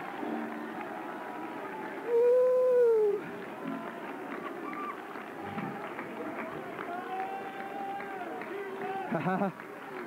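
A church congregation's overlapping shouts and cries of praise over music, with one loud drawn-out cry rising and falling about two seconds in.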